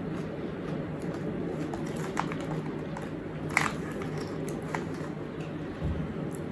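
A person chewing a crunchy sweet snack with the mouth closed, with a few sharp crunches about two seconds in and a louder one midway, over a steady low background hum.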